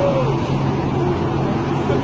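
People's voices over a steady low rumble and hum of background noise.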